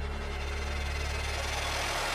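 Dramatic background-score effect: a steady low rumbling drone with a hissing swell that builds louder over it.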